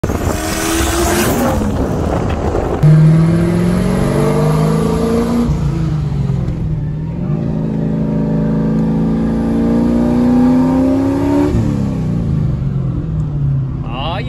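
Engine of a turbocharged Silverado drift truck pulling hard, heard from the cab. The engine cuts in loudly about three seconds in after a noisier rushing start. Its pitch climbs, drops at a shift, climbs through a long second pull, then falls away as the throttle lifts near the end.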